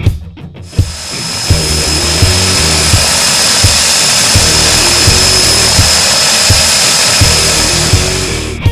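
A twin-turboprop jump plane, a de Havilland Canada DHC-6 Twin Otter, running its engines: a loud steady high turbine whine with rushing propeller noise that comes up about a second in. Rock music with a regular beat plays underneath.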